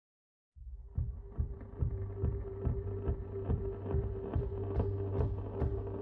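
Background music: a pop song's intro starting about half a second in, with a steady beat under a held note.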